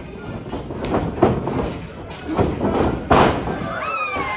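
Thuds of wrestlers' bodies landing on a wrestling ring's canvas, four impacts with the loudest about three seconds in, over crowd shouting and chatter.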